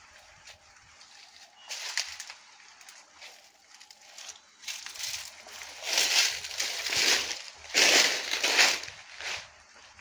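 Dry banana leaves and undergrowth rustling and crackling as someone pushes through them: a short burst about two seconds in, then two longer, louder bursts in the second half.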